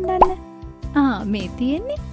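A short cartoon plop sound effect about a fifth of a second in, over steady children's background music; a voice follows near the end.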